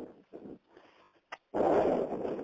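A person's heavy, breathy sigh through a phone line, starting about one and a half seconds in and lasting about a second, just after a single faint click.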